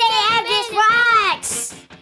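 High-pitched excited cheering from boys: a drawn-out sung or shouted call whose pitch swoops up and down. A short hiss comes about one and a half seconds in, and the voices die away at the end.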